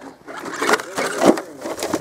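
An RC rock crawler's tyres and body knocking and scraping on wooden planks in a series of irregular knocks as the truck tips over on the track.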